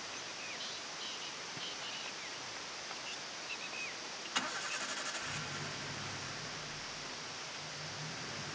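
A vehicle engine is started about four and a half seconds in: a click and a short burst of starter cranking, then it catches and runs at a steady low idle. Before that, a few faint bird chirps sound over a steady hiss.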